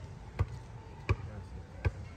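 Dull thuds repeating at an even pace, about one every three-quarters of a second.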